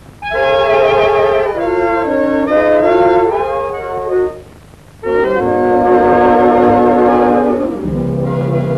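A 1940s swing dance band's reed and brass section playing the instrumental opening of a song in sustained chords. There are two phrases, the first stepping downward, with a short break a little past halfway.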